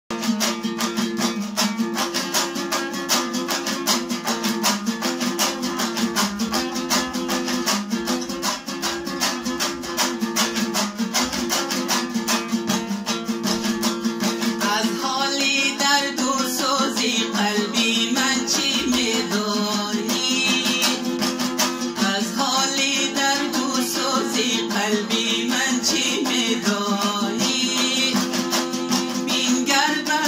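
Afghan dambura strummed fast and evenly over its steady drone string as an instrumental opening. From about halfway, a man's voice sings over the strumming.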